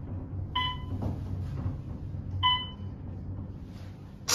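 Elevator floor-passing beeps, two short electronic tones about two seconds apart, as a Westinghouse traction elevator modernized by Otis rides up past floors. Under them runs the car's steady low hum in motion.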